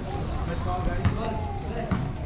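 A basketball bouncing on an outdoor concrete court, with two sharp bounces, one about a second in and one near the end, amid players' and onlookers' voices calling out.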